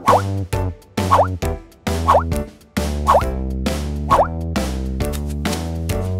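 Five short rising cartoon 'plop' sound effects, about one a second, as waffle cones drop one by one into the holes of a wooden stand, over bouncy children's background music.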